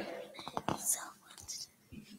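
Sheets of paper being handled and rustled at a lectern microphone, with a few light clicks about half a second in and a short papery hiss near the middle.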